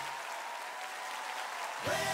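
Live audience applauding after a song ends, a steady spread of clapping with crowd voices in it. Music starts up again near the end.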